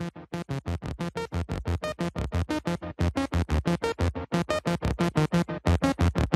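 Electronic intro music: a fast, even run of short pulsing notes, about eight a second, growing gradually louder.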